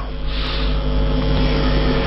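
Helicopter sound effect: a steady engine and rotor noise.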